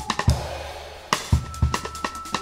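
Jazz drum kit playing loose, broken hits on snare, bass drum and cymbals. The hits thin to a fading cymbal wash in the middle, then pick up again as a high held note comes in.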